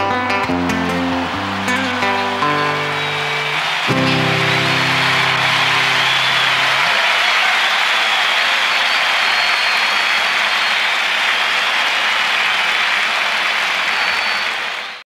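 Acoustic guitar playing the closing notes of a song, ending on a strummed chord about four seconds in that rings out for a few seconds. A large crowd's applause swells under it and carries on steadily after the guitar dies away.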